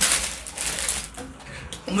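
Plastic packets of instant noodles crinkling as they are handled, loudest in the first second and then dying down.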